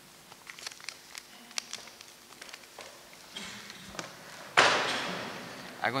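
Scattered light footsteps and small taps in a large hall, then about three-quarters of the way in a sudden loud rush of noise that dies away over about a second.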